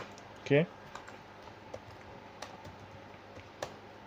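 Computer keyboard keystrokes: a few scattered, separate key clicks as terminal commands are typed and entered.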